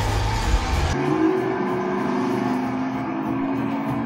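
Film soundtrack of music and race-car engines played through a Valerion ThunderBeat wireless surround system, full and with heavy deep bass. About a second in it cuts to the same kind of passage through the Valerion VisionMaster projector's internal speakers, which sound thin, with no deep bass and duller treble.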